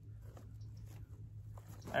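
Faint handling noise of a nylon first aid pouch being strapped onto a plate carrier's webbing, over a low steady hum.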